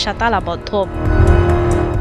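A voice briefly, then from about a second in a steady droning hum over a deep rumble, a motor vehicle engine running close by.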